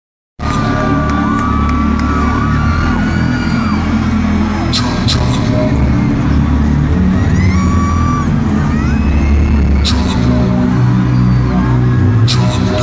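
Live arena hip-hop concert recorded on a phone: loud, bass-heavy music with voices and high gliding tones over it, cutting in a moment after the start. A few sharp hits land about five and ten seconds in.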